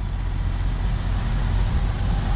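Steady road traffic noise, an even rushing with a low hum underneath.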